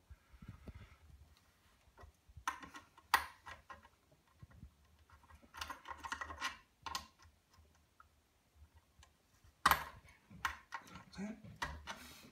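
Scattered light clicks and small metallic rattles of hands and a tool working on parts inside a metal amplifier chassis, coming in short clusters, the sharpest click about three seconds in.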